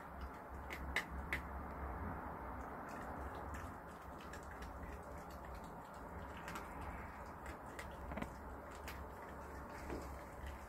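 Red fox eating scraps off paving: faint scattered clicks and ticks of its mouth over a steady low hum.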